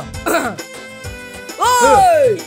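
Background music under comic vocal noises: a short cough-like burst a moment in, then near the end a loud drawn-out cry that rises and then falls in pitch.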